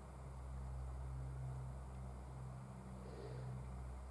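Quiet background: a faint steady low hum with light hiss, and no distinct sound event.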